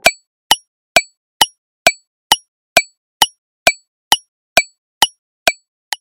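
Countdown timer ticking sound effect: short, sharp clock ticks, evenly spaced at about two a second, with silence between them.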